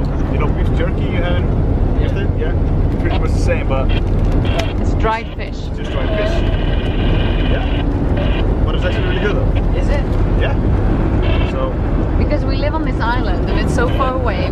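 Passenger van's engine and road rumble heard inside the cabin while driving, a steady low drone, with talking over it.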